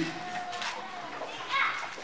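Faint, distant voices of people in the congregation, off the microphone, with a brief louder voice near the end.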